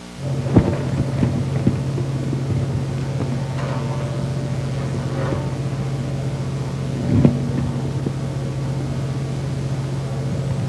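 A steady low hum comes on suddenly, with a few scattered knocks and thumps over it. The loudest thumps fall about half a second in and about seven seconds in.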